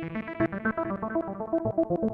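Sequential Prophet X playing a fast repeating sequence on its sampled 1928 Steinway grand piano program, with synth oscillators and analog filtering mixed in. The tone darkens as the knob is turned and the filter closes, the bright upper ring fading away.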